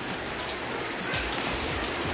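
A steady hiss with fine crackling, even in level throughout.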